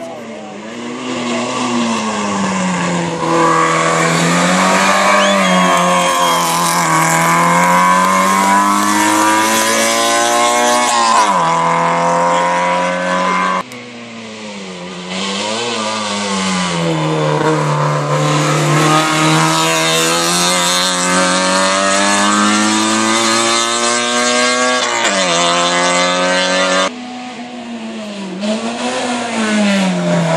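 Race car engines revving hard while climbing toward a hairpin, mostly out of sight: the pitch climbs under full throttle and drops sharply at each gear change. The sound breaks off abruptly twice and starts again.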